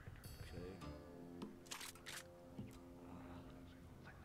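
Sound effects from an online video slot during free spins: a bright chime just after the start as a wild symbol lands, then a held musical chord of several steady tones, with two short hissing bursts near the middle.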